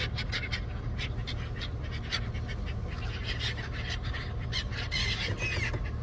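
A flock of gulls calling close by, many short squawking calls one after another, over a steady low rumble.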